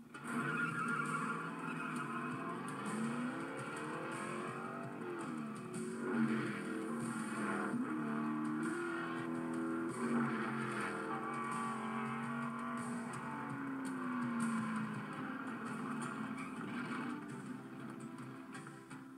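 Stock car engines racing past, their pitch rising and falling, mixed with a music score, heard as a film trailer's soundtrack played back through a TV speaker.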